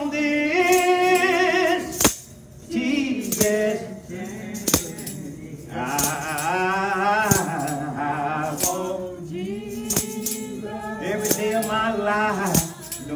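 A man singing a slow gospel song into a microphone, holding long notes with vibrato between short pauses, while a hand-held tambourine is shaken and struck with sharp hits through the phrases.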